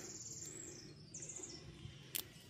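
Faint, high-pitched, rapid trilled chirping of a small bird in two short bursts: one fading out about half a second in, another a little past the middle.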